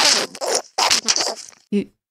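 Garbled, scratchy voice of the caller on the other end of a phone line, heard as three hissy bursts over about a second and a half, followed near the end by a person starting to reply 'You...'.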